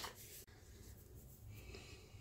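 Near silence: faint rustling of hands handling a cotton crochet dishcloth and yarn, with a light click about half a second in.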